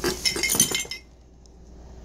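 Glass jars and bottles clinking against each other in a cardboard box as items are pulled out: a quick cluster of clinks lasting about a second.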